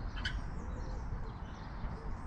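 Outdoor background noise, a steady low rumble, with a single short bird chirp just after the start.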